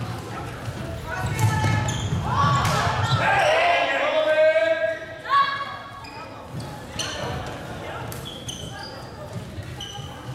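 Floorball game sounds in a large sports hall. A player gives a loud, drawn-out shout from about one to five seconds in, over scattered clacks of sticks and ball and short squeaks of shoes on the court floor, all echoing in the hall.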